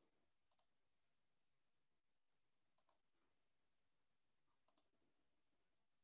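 Near silence broken by three faint computer mouse double-clicks, about two seconds apart.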